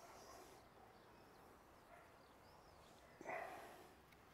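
Near silence, broken a little after three seconds in by one short, soft breathy sound like an exhale.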